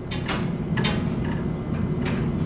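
Light clicks and rattles of hanging test-lead jumpers, their plugs knocking together as one is picked out of the rack, over a steady low hum.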